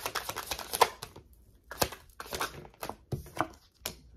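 A tarot deck handled and shuffled by hand: a dense run of rapid card flicks in the first second, then a string of separate sharp card snaps and taps.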